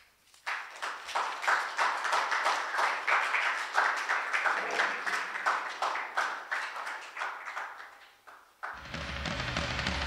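Audience applauding, starting half a second in and dying away over about eight seconds. Near the end, metal music with guitar starts suddenly.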